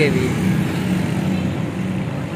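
Road traffic: a motor vehicle engine running with a steady low hum, with a broad traffic hiss.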